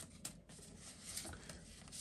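Faint rustling of polymer banknotes being handled and sorted, with a couple of soft ticks near the start.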